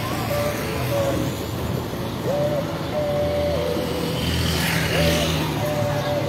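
Street traffic: motor vehicles running past on the road, swelling a little past the middle as one goes by. Faint music plays in the background.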